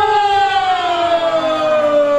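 A long, high held vocal note, sung or called out, sliding slowly and steadily down in pitch, typical of Andean carnival singing, over a parade crowd.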